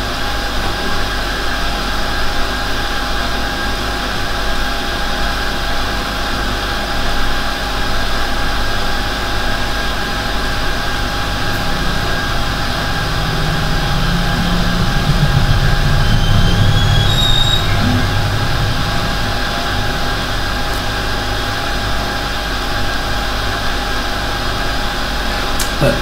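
Steady mechanical background hum and hiss with a few fixed whining tones, with a low rumble that swells up and fades away in the middle.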